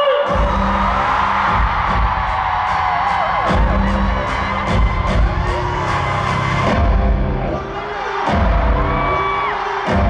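Pop song played live over a concert PA: a sung melody over a heavy bass that drops out briefly a few times, with a steady percussion beat.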